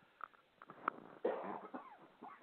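A short, quiet cough from the man speaking, about a second and a quarter in, after a few faint mouth clicks.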